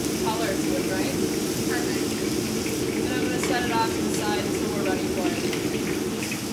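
A garlic, vinegar and chili sauce sizzling and bubbling in a hot pan as it cooks down, over a steady low kitchen roar. A voice speaks indistinctly now and then.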